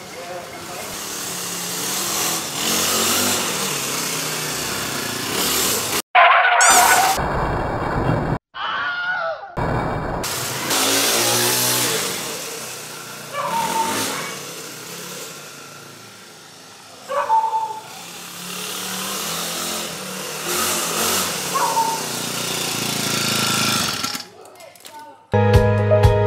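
Small petrol engine of a homemade scooter running as the scooter rides along the alley and back, the sound swelling and fading with its distance and broken by a few abrupt cuts. Music comes in about a second before the end.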